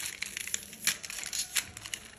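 Plastic candy wrapper crinkling and crackling as it is torn open by hand: a quick run of sharp crackles, the loudest just before a second in.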